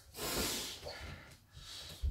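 A man breathing out hard between kung fu strikes: one noisy exhale in the first second, then a couple of fainter, shorter breaths.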